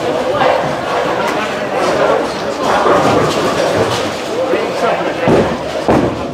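Busy bowling alley din: indistinct chatter of many voices, with a heavy thud a little after five seconds in.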